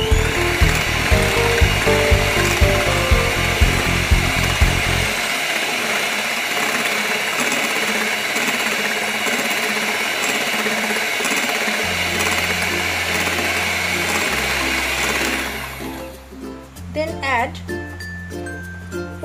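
Electric hand mixer running steadily with a whine, its beaters whisking a thin egg-and-milk batter in a glass bowl; the motor stops a couple of seconds before the end.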